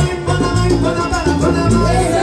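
Salsa orchestra playing live, with a bass line moving in held notes under the band and percussion.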